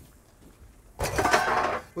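Metal cookware clattering: a stainless steel cooking pot on a grill side burner is handled with a brief metallic scrape and clank about a second in, lasting under a second.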